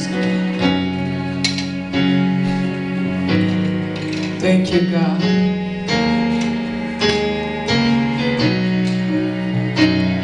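Gospel keyboard music: sustained chords over a bass line, changing every second or two.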